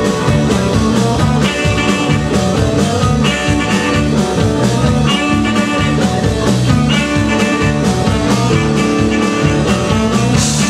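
A live rockabilly band plays an instrumental stretch of a song with no vocals. Electric guitar rides over stepping bass notes and a drum kit keeping a steady beat.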